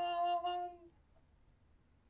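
A woman's voice sings one held note, the last 'dun' of a dramatic 'dun dun dun', which stops just under a second in; then faint room tone.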